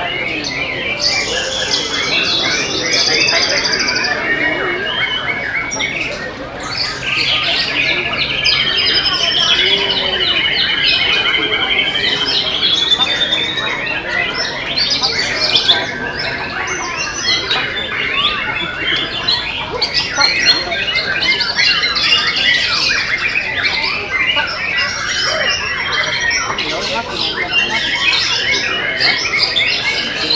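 Several white-rumped shamas (murai batu) singing at once, a dense tangle of loud whistles, chirps and rattling phrases, with one bird holding a long, even trill for about five seconds a quarter of the way in.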